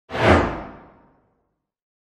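A single whoosh sound effect for a channel logo intro. It comes in suddenly, with a deep low end at its loudest, then fades out within about a second, its hiss growing duller as it dies away.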